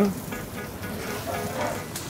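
Baby onions frying in hot oil in a steel frying pan, with a steady sizzle as a cube of butter is spooned in. Faint background music runs underneath.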